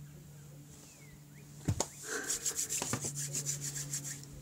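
Two sharp knocks of hands, then palms rubbed briskly together in quick back-and-forth strokes, about seven a second, for the last two seconds.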